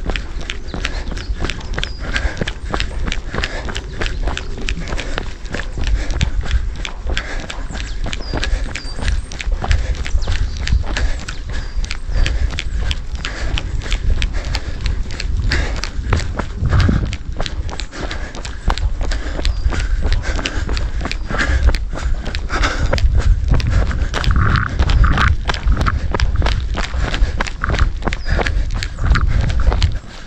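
Running footfalls on a soft dirt trail, a steady rhythm of about three steps a second, over a low, steady rumble.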